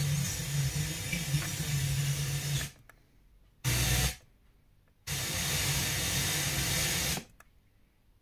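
FM radio static from a Yamaha receiver's tuner as it is stepped between frequencies. A hiss, with a faint low hum under it at first, cuts to silence about three seconds in, returns as a short burst of hiss about a second later, runs again from about five seconds in, and cuts out near the end: the tuner muting at each frequency step.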